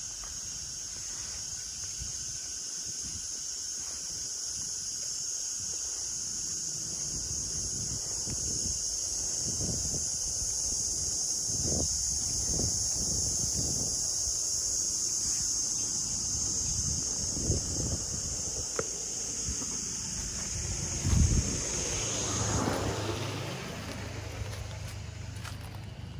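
Cicadas in the trees giving a steady, shrill high-pitched drone, which cuts off suddenly near the end. Under it, footsteps on a brick path and wind on the microphone from about a third of the way in, with one louder thump near the end.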